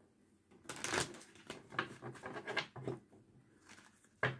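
A deck of large oracle cards being shuffled by hand: a run of soft, irregular swishes and taps as the cards slide over one another.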